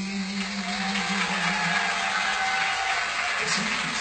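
Studio audience applauding, heard through a television's speaker, while the song's last held note dies away in the first two or three seconds.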